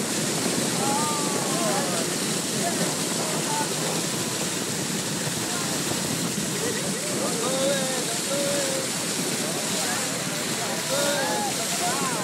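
Steady rush of water along the hull of a moving boat, its bow wave hissing past the side.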